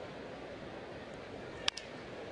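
Steady murmur of a ballpark crowd, then, near the end, one short sharp knock of the bat meeting the ball on a slow tapper.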